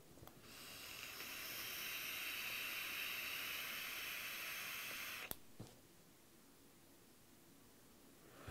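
Long draw on a Joyetech Cuboid Mini e-cigarette with a stainless-steel notch coil: a steady airy hiss of air pulled through the tank as the coil fires. It lasts about five seconds and stops with a short click.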